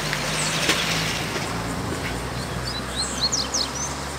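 Double-collared seedeater (coleiro) singing a very fast song of short high chirps and quick down-slurred notes, clearest in the second half, over a low steady hum.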